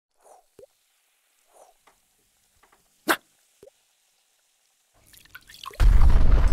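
Cartoon sound effects: a few soft drips and plops, a sharper drip about three seconds in, then a rising fizz that ends in a loud, deep explosion near the end.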